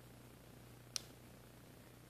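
Near silence over a steady low hum, broken by one short, sharp metal click about halfway through as pliers take hold of a butted jump-ring chain.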